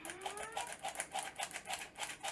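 Metal hand-squeezed flour sifter clicking rapidly as it is worked over a mixing bowl, about seven or eight clicks a second. A few faint rising tones sound behind it.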